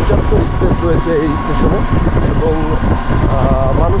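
Steady low rumble of a moving vehicle, with a person talking over it.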